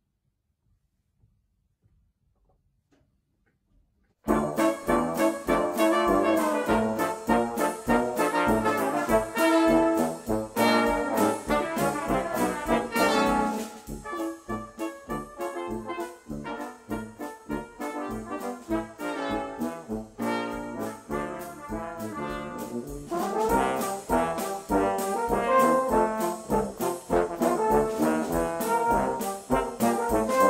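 About four seconds of near silence, then a brass ensemble of trumpets, French horns, trombones and tuba with a drum kit suddenly strikes up a jazzy tune. The music eases to a softer passage in the middle and grows louder again near the end.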